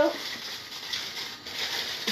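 Steady hiss of a gas hob with a naan cooking on a flat tawa.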